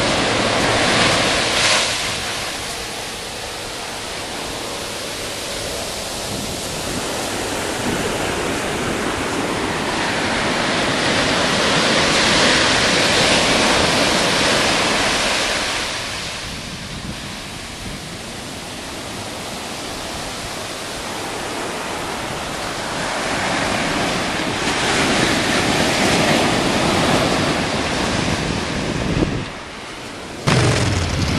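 Ocean surf breaking and washing up a sandy beach, swelling louder and dropping back in slow surges about every twelve seconds.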